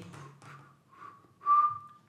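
A man whistling through pursed lips: a few breathy, airy tries, then one clear steady high note from about one and a half seconds in.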